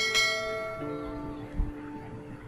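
A click and then a bright bell-like chime at the start, ringing out and fading over about a second, over background music with held notes.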